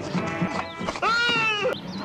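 Film soundtrack music with a steady pulsing beat, broken about a second in by a loud wavering, bleat-like cry that lasts under a second.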